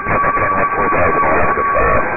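Air traffic control VHF radio recording with two transmissions keyed at once: garbled overlapping voices under a steady high-pitched whine, the squeal of a blocked, stepped-on transmission.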